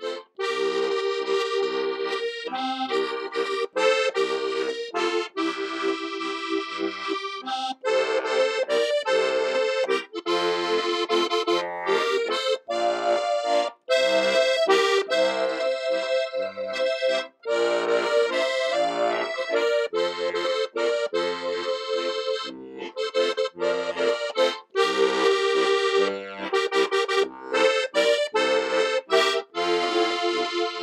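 Four-row diatonic button accordion (Strasser) playing a tune at regular speed: a melody on the right-hand buttons over short, repeating bass notes.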